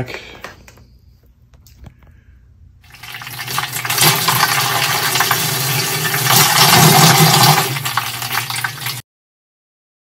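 Mixed saltwater pumped through a clear vinyl hose, pouring and splashing into a plastic container, with a low pump hum beneath. It starts about three seconds in, builds, and cuts off suddenly near the end.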